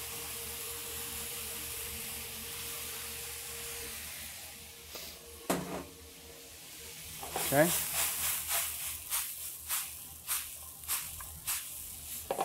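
Swiss chard sizzling as it goes into a hot sauté pan of corn, bacon lardons and chicken stock; the sizzle dies down after about four seconds. From about seven seconds in come a run of quick clicks and scrapes as the greens are stirred and tossed in the metal pan.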